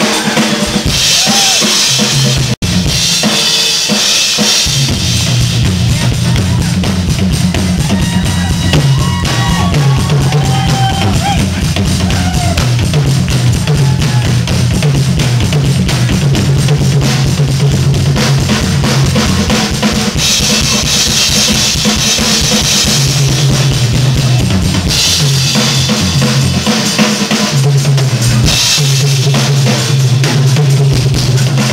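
Rock drum kit played live and loud, dense kick and snare hits with cymbal crashes washing in and out, over a sustained low bass line. The sound cuts out for an instant about two and a half seconds in.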